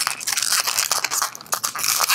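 Inflated latex twisting balloon rubbing and squeaking under the fingers as it is twisted and the nozzle tucked in: a dense run of short squeaks and rubs.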